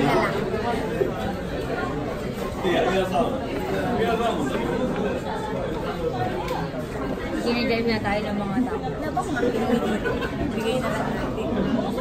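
Chatter in a busy restaurant: overlapping voices of people talking at and around the tables, with no other distinct sound standing out.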